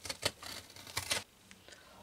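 Utility knife cutting into a leather shoe: a few short, sharp scraping strokes in the first second or so, then quiet.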